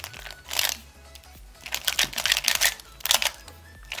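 Plastic Square-1 puzzle being turned by hand: several quick runs of clacking and scraping as the layers are twisted and the slice is flipped through a move sequence. Background music with a steady low bass plays underneath.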